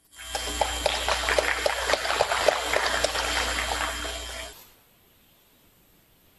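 Audience applauding: a dense patter of many hands clapping that dies away about four and a half seconds in.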